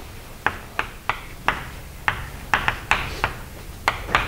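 Chalk tapping and clicking against a blackboard while words are written, a string of sharp, irregularly spaced taps about two or three a second over faint room hiss.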